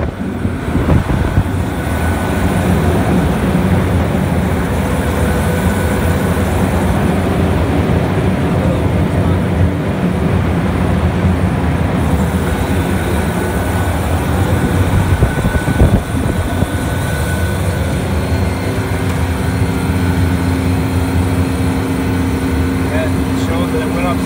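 Outdoor refrigeration condensing unit running, its condenser fan motors and airflow making a steady low mechanical hum. Half the condenser coil is blocked to mimic a dirty coil, and the fan motor is loaded up to 3.7 amps, above its 3.5-amp rating. A steady hum grows stronger in the last several seconds.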